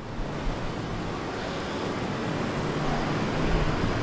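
A steady, broad rushing noise with no clear pitch, slowly growing louder.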